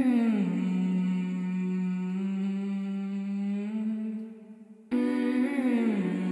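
Wordless male humming, with no lyrics: a long held low note that slides down a little at its start and fades about four seconds in. A second note begins about five seconds in with the same downward slide.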